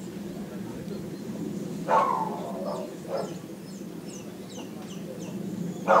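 Small birds chirping repeatedly high up over a steady low hum, with one loud call about two seconds in that falls in pitch.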